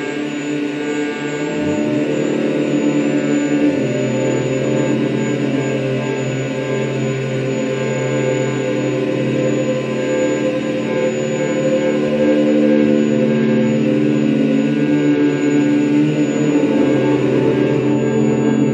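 Live electronic drone music: many steady, held tones layered together from electronics, at an even loudness, with a deeper tone coming in about four seconds in.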